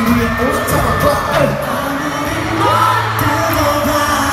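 K-pop concert music played live in an arena: male voices singing a melody over the band's backing track, with faint crowd noise.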